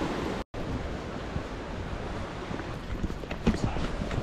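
Steady rush of sea surf and wind on the microphone. About half a second in it drops out briefly to silence at a cut, then carries on, with a few faint ticks near the end.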